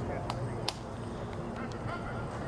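Open-air background of distant voices on a playing field, with a few short sharp knocks, the loudest about two-thirds of a second in.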